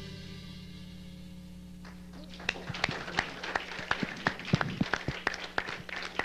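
The last chords of a song die away, then about two seconds in, scattered hand-clapping from a studio audience starts, several claps a second, over a steady low hum.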